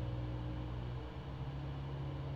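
Steady low hum with a faint hiss, the background noise of the recording. The hum's tones shift slightly about a second in.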